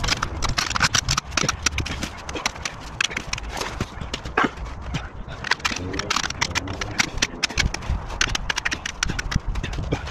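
Dense, irregular clattering and knocking from handling steel wheels, tyres and tools while changing a pickup's wheels.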